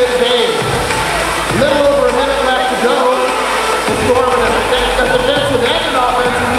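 Loud, echoing arena din from a robotics competition: a voice over the public address mixed with crowd noise, with a steady tone that comes and goes.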